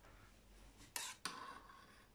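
Mostly quiet, with one short scrape or clink about a second in: a spoon against the stainless steel bowl of a Thermomix TM6 as the stew is stirred.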